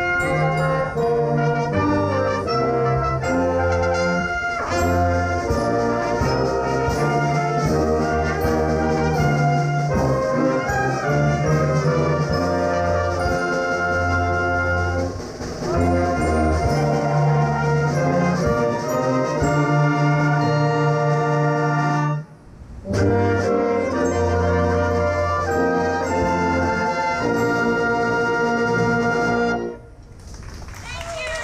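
Community orchestra of strings, woodwinds and brass, with a sousaphone, playing a piece of held brass chords over a low bass line. The music breaks off briefly about two-thirds of the way through, then resumes and stops just before the end.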